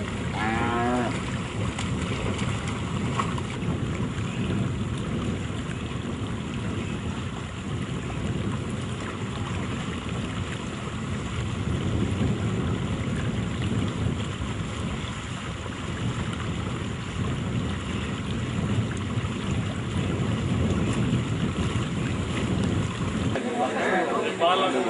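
Wind buffeting the microphone: a steady low rumble with no clear rhythm.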